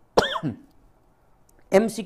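A man coughs once into his fist, a short single cough; near the end he begins to speak.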